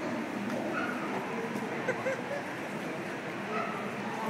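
A dog barking a few short times, the loudest bark about two seconds in, over a steady murmur of many voices.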